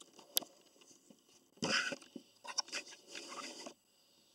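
Camcorder handling noise: hands gripping and moving the camera body, with a sharp click just after the start, a short rustling scrape near the middle and more scraping and rubbing in the second half.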